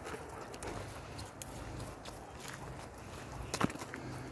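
Footsteps on a gravel track, soft and irregular, with a sharper click a little past three and a half seconds in.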